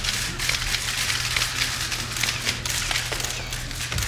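Many press still-camera shutters clicking rapidly and irregularly, over a steady low hum.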